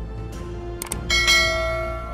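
A mouse-click sound effect, then a notification-bell chime about a second in that rings and slowly fades, over low background music.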